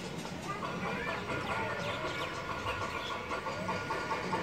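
Outdoor background of birds calling, with short chirps and a rapid run of repeated notes, over a murmur of distant voices.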